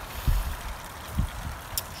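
Garden fountain's water jet splashing steadily into its stone basin, with two low thumps, one about a quarter second in and one just past a second.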